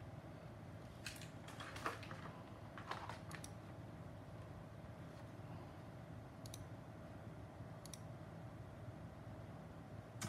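A few faint, sharp clicks in the first few seconds, then two fainter high ticks later on, over a steady low hum of bench electronics.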